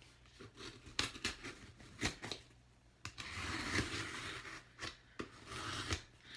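Cardboard shipping box being opened by hand: a run of sharp clicks and taps, then about two seconds of tearing and scraping starting about three seconds in, followed by a couple more clicks.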